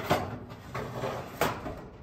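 Stainless steel cooking grate handled and set into a higher rack position inside a pellet grill's steel cooking chamber, with two metallic clanks a little over a second apart.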